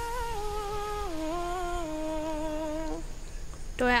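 Electric hand mixer running in cake batter: a steady motor whine that drops in pitch about a second in, then switches off about three seconds in.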